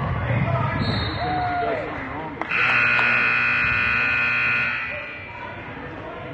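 Gym scoreboard horn giving one steady electronic buzz of about two seconds, the loudest sound here, signalling a stoppage in play. Before it, voices and court noise from the game.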